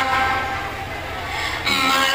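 A man singing an Urdu nazm into a microphone: a long held note dies away over the amplification, and the next sung line starts near the end.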